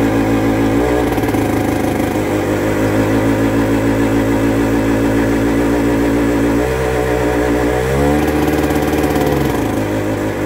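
Belarus MTZ-52 tractor's D-50 four-cylinder diesel running on a cold start, blowing white smoke. It runs steadily, its note shifts about two-thirds of the way in, then rises and holds for a second or so before dropping back near the end.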